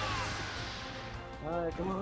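Action-film soundtrack playing under the stream: background music with a noisy hit and a falling pitched sound at the start, then a voice about one and a half seconds in.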